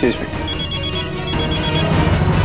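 A telephone ringing with an electronic trilling ring: two short rings in quick succession, about half a second each.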